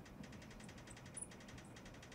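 Near silence: faint room hiss with a few faint high squeaks from a marker writing on a glass lightboard.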